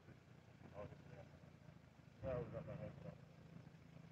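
Faint, indistinct voices of a distant conversation, with one louder stretch a little past halfway, over a steady low hum.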